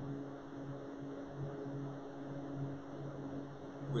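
Steady background hum with a faint hiss; the low part of the hum wavers in strength every half second or so.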